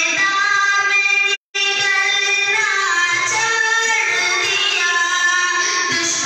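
A high voice singing a naat, an Islamic devotional song, in long held and bending notes. The sound drops out completely for a moment about a second and a half in.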